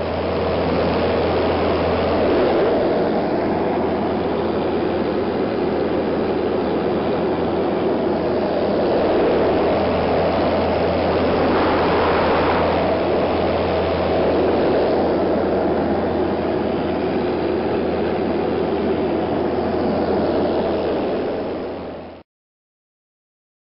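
Cabin drone of a Piper Warrior in flight: its four-cylinder Lycoming engine and propeller running steadily with loud wind rush, a constant low hum under a broad rushing noise.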